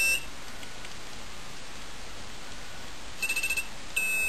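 A telephone intercom station's sounder beeping as the station is signalled: the dial-select board decodes a touch-tone key and reverses the line polarity to that station. A high tone ends just after the start, and a short pulsing burst of the same tone follows about three seconds in, with steady hiss between.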